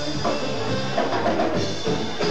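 Live rock band playing, the drum kit to the fore with electric guitars, heard from among the audience.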